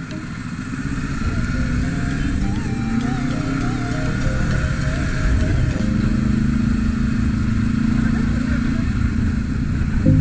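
Sport motorcycle engine pulling away and building speed, getting louder over the first couple of seconds, then running steadily at cruising speed from about halfway in.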